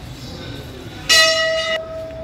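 A metal temple bell struck once about a second in, a sudden bright clang that settles into one steady tone and goes on ringing as it slowly fades.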